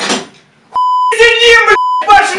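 A steady, high-pitched censor bleep starts about three-quarters of a second in, covering swearing; it breaks off for a loud shout and then resumes near the end.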